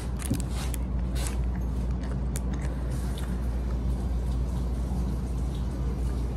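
Chewing bites of a chocolate-coated ice cream bar, with small clicks and crinkles from its foil wrapper, over a steady low room hum.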